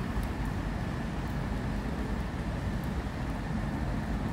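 Steady outdoor background of distant road traffic, a low even rumble with no distinct events.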